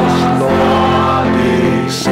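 A hymn sung by a group of voices together, led by a man's voice on a close microphone, in held notes that change pitch every half second or so.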